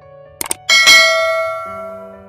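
Subscribe-button animation sound effect: two quick mouse clicks about half a second in, then a bright notification-bell ding that rings out and slowly fades.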